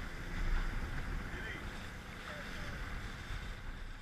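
A motorboat under way at speed: wind buffeting the microphone over the steady rush of water and spray along the hull, dropping away near the end.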